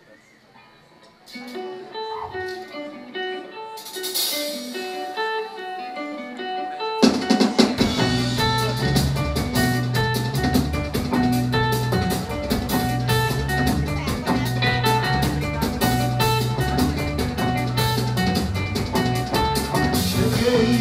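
A guitar picks a melody alone, with a cymbal swell about four seconds in. About seven seconds in a live band comes in with drums and a bass line, and the song begins.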